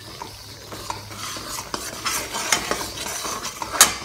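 A steel ladle stirring and scraping a thick pickle mixture around a hot steel kadhai, with sizzling and several metal-on-metal clicks, the loudest clink near the end.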